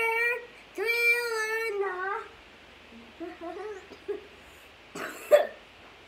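A young boy singing two long held notes in a high child's voice, then softer vocal sounds, and a short, loud breathy vocal burst about five seconds in.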